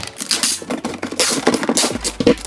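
Packing tape pulled off a handheld tape gun onto a cardboard box, making two or three long, loud tearing screeches with clicks and knocks of the dispenser between them.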